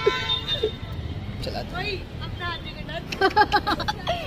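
A vehicle horn sounds one held note for about a second at the start, over a steady rumble of street traffic; people's voices follow.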